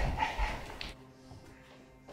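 Soft film underscore with low held tones, and over it a brief cry during the first second that fades away.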